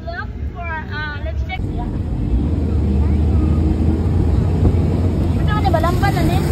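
A moving vehicle's engine rumble with wind rushing on the microphone. It grows louder and fuller about a second and a half in and then holds steady. A woman's voice talks over the start.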